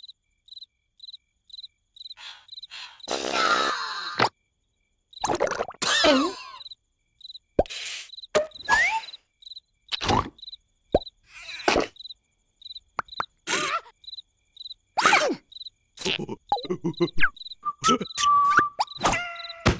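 Animated night-time ambience: a cricket chirping steadily, a short high chirp about twice a second. Louder cartoon character squeaks, grunts and comic knocks break in every second or two.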